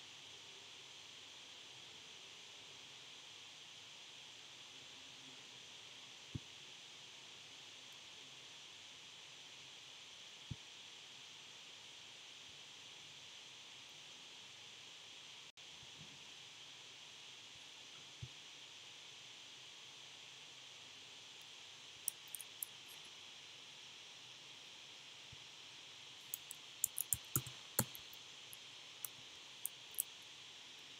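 Faint steady hiss with scattered computer clicks: a few single clicks spaced seconds apart, then a quick run of keystrokes near the end as a value is typed on the keyboard.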